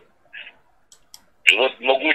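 A pause in a man's speech with a couple of faint clicks about a second in, then the man starts talking again about one and a half seconds in.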